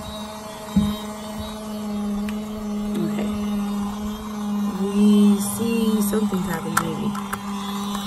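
Small electric motor of a toy mini washing machine for makeup sponges running, spinning its water-filled drum with a steady hum. A sharp knock comes about a second in, and there are handling knocks on the plastic casing around the middle.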